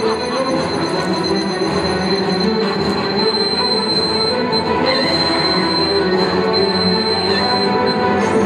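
Loud, dense droning and screeching noise with a thin, steady high whine held throughout that stops just before the end.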